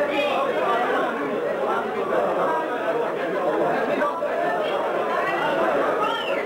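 Crowd of many people talking at once in a packed room: a steady din of overlapping voices.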